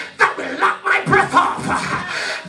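A man's voice in short, forceful bursts delivered close into a handheld microphone, not plain words that a listener can follow.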